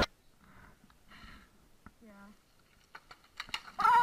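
Mostly quiet tree skiing in deep powder, with a few faint sounds and a short pitched sound about halfway. Several sharp clicks come just before the end, followed by a loud short cry with falling pitch as a skier goes into a tree and snow showers down.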